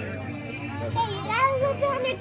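A young girl's high-pitched voice, wordless, gliding up and down in pitch, loudest in the second half, over a steady low background hum.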